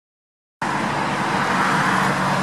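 Steady road-traffic noise with a low engine hum, cutting in suddenly just over half a second in after silence.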